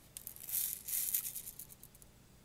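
Daisy Red Ryder BB gun being cocked between shots: a run of scratchy, rattling sounds from the lever action and mainspring, with the BBs rattling in the gun.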